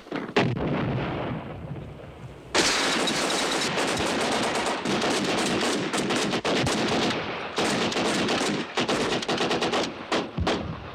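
Gunfire from infantry rifles in a night firefight: a few single shots in the first second. From about two and a half seconds in, it becomes a sustained, rapid barrage of many overlapping shots.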